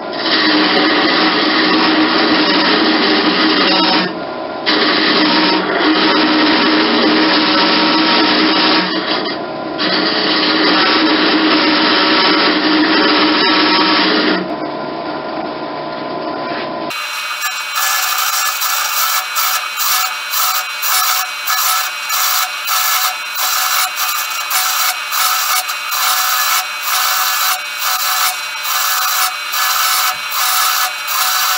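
Wood lathe turning a small wooden finial while a hand-held turning tool cuts the spinning wood: a steady scraping cut that drops out briefly twice when the tool comes off. About halfway through it abruptly changes to a brighter, rhythmic scrape about twice a second.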